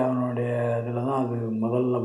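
A man's voice drawing out a long, level, chant-like tone for about a second and a half, then going on in shorter syllables.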